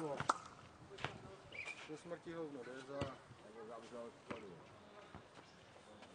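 A nohejbal ball being kicked and bouncing on a clay court during a rally: about four sharp knocks spread over a few seconds, with faint voices calling in between.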